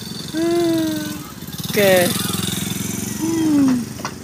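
A bicycle's rubber-bulb trumpet horn is honked three times. Each honk is a short reedy tone that slides in pitch, the last one falling. A low steady hum runs underneath.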